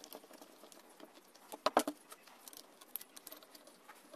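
Small metallic clicks and light rattling as parts on the gear head of a cordless angle grinder are handled, with a short burst of louder clicks near the middle.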